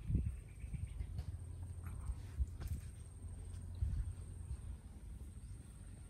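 Quiet outdoor ambience: wind rumbling on the microphone with a few faint soft knocks, over a thin steady high-pitched tone.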